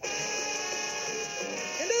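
A cartoon elephant's trumpet call: one long, steady note that stops just before a narrator's voice begins near the end.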